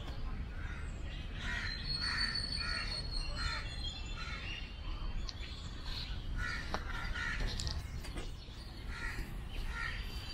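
Birds calling: runs of short repeated calls, with a thin high whistle held for a couple of seconds near the start, over a steady low rumble.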